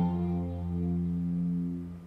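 An electric guitar chord ringing out after being struck, sustaining and slowly fading.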